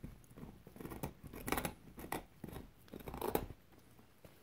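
A young dog gnawing on a big knuckle bone: short, irregular scrapes and bites of teeth on bone, about six in four seconds.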